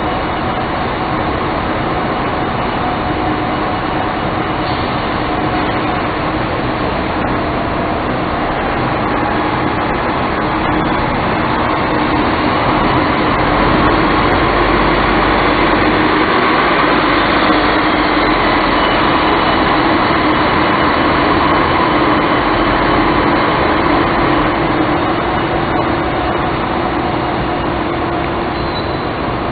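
Volvo Olympian double-decker bus with a Volvo D10A six-cylinder diesel engine, pulling away and driving past at close range. The engine sound is steady and grows louder from about halfway through as the bus goes by.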